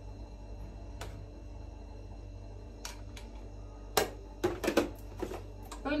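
Scattered light clicks and taps of a small glass spice jar and utensils being handled over a clay pot, a few spread out at first, then a sharper click about two thirds of the way in and a quick run of taps after it.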